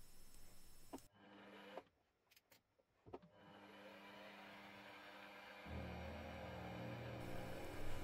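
Benchtop milling machine running faint and steady, with a few light clicks in the first few seconds as the quill depth is set. About two-thirds of the way in the machine's steady hum steps up louder as the table is fed to mill the gunmetal axle box casting with a quarter-inch end mill.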